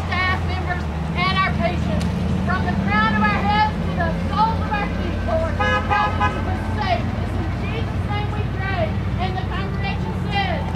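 Several people's voices, overlapping and not clearly worded, over a steady low hum of road traffic, with a short horn-like tone about halfway through.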